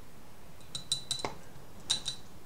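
About half a dozen light, sharp clinks of glass and clay, mostly in the second half, as shisha tobacco is taken from a glass bowl and put into a clay hookah head.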